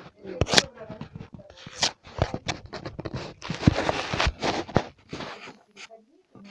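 Rustling and clicking handling noise: a phone being moved about against clothing and a plastic bag, with irregular scrapes and several sharp knocks.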